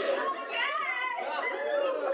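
Several people's voices overlapping as chatter, with no clear words.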